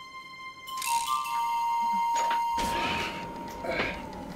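Background film score: a held high tone that steps slightly lower about a second in and grows louder, with a rising noisy wash in the second half.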